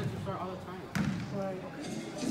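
A soccer ball struck hard once about a second in, a single sharp thud in a large indoor hall, with voices of players and onlookers in the background.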